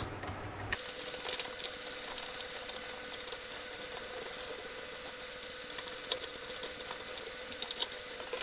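Screwdriver driving small screws into a plastic fan housing and hands handling the wire grille: scattered light clicks and ticks over a faint steady hum.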